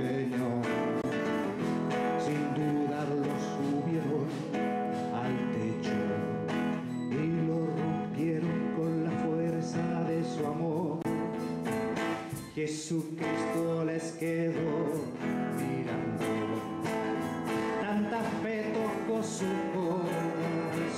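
Live song: a strummed acoustic guitar with a man singing to it.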